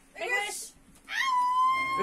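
A French bulldog whining: a short whine, then a long high whine that rises and holds steady through the second half.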